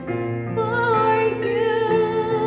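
A woman singing a Christian wedding song, holding long notes, with keyboard accompaniment under her.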